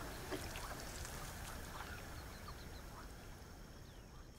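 Faint reed-marsh ambience: scattered short calls of waterbirds over a steady hiss and low rumble, slowly fading down.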